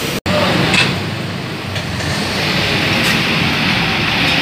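Steady road traffic noise from a busy street, a low continuous rumble, broken by a brief gap in the sound about a quarter of a second in.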